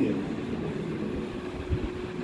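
A pause in a man's talk: steady background hum with one faint held tone, and a couple of low bumps near the end.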